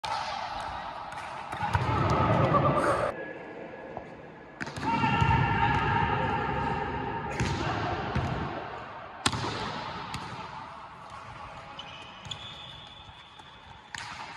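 A volleyball being struck and hit back and forth in a rally, with sharp slaps of hands on the ball. The strongest hit comes about nine seconds in. Players' long shouted calls rise over it twice, echoing in a large sports hall.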